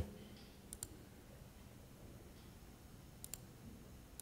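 Two computer mouse clicks, each a quick press-and-release, about a second in and again near the end, against faint room tone.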